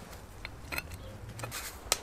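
A few faint, sharp clicks of a thin steel wire and a steel strip being handled against each other, the loudest near the end.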